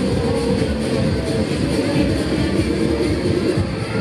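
Sobema Matterhorn ride running, its cars rumbling steadily round the track, with fairground music playing behind.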